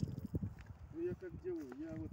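A man's voice murmuring with no clear words, with a few faint short knocks or splashes in the first half-second as the kwok is drawn out of the water.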